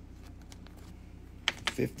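Light clicks and taps of small bagged gemstones being handled and set down in a display tray, a few sharper clicks just before a man's voice says "fifty" near the end, over a steady low hum.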